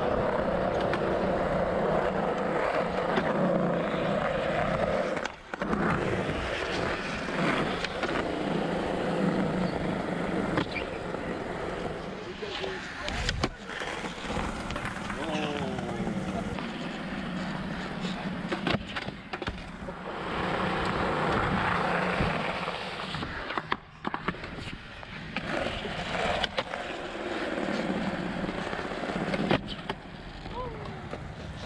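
Skateboard wheels rolling on concrete, broken by sharp clacks and knocks of the board on tricks, landings and a fall.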